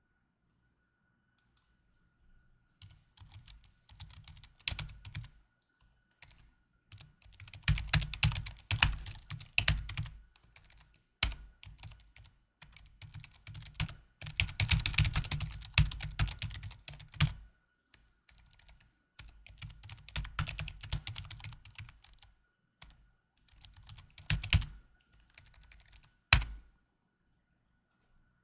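Typing on a computer keyboard in bursts of rapid keystrokes separated by short pauses, with a faint steady high tone underneath.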